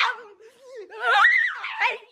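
A girl laughing in a wavering, shaky voice that climbs into a high squeal about a second in.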